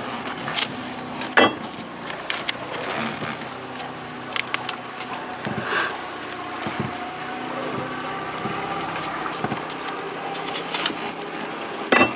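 Masking tape being pulled off the roll, torn and pressed down by gloved hands: irregular sharp clicks and short crackles, with a faint steady hum underneath.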